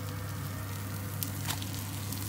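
Spatula turning a cheese-crusted tortilla wrap in a nonstick frying pan, with a couple of light knocks about midway, over a steady sizzle of cheese frying.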